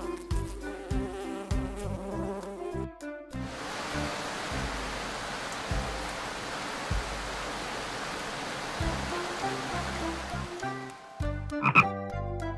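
Cartoon sound effect of steady falling rain, an even hiss that starts about three seconds in over the song's backing music and stops shortly before the end. Near the end comes a cartoon frog's croak.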